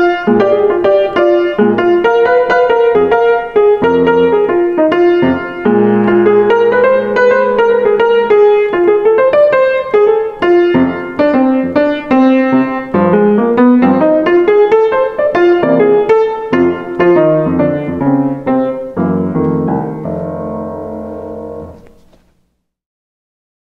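Solo grand piano playing a chorus of jazz blues, with fast right-hand lines mixing the major blues scale and the minor blues scale over left-hand chords. It ends with a held chord from about 19 seconds in that rings and fades.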